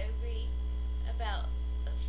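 Steady low electrical mains hum, with two brief voice sounds over it about a second apart.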